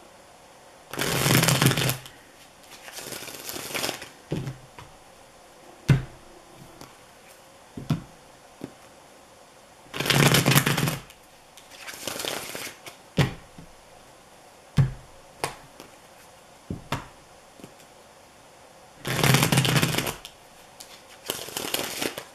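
A tarot deck shuffled by hand, the cards rustling and slapping together. There are three loud bursts of shuffling about nine seconds apart, each followed by softer rustling, with scattered light taps of cards in between.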